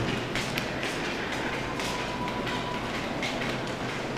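Footsteps on a hard tiled floor, light taps at a walking pace, over a steady background noise.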